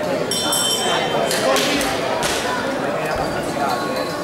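A ring bell dings once near the start, signalling the start of the round, over the continuous chatter and calls of people around the ring.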